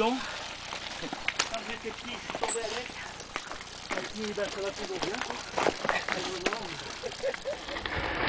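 Faint, indistinct chatter of several people in the background, with scattered short crunching clicks like footsteps on gravel.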